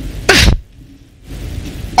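A single short, sharp vocal burst from a man at a microphone, like a sneeze, about a quarter second in, followed by quiet room hum.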